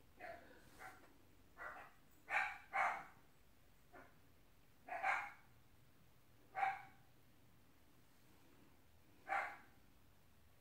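A dog barking: about nine short barks at uneven intervals, with a quick pair about two and a half seconds in.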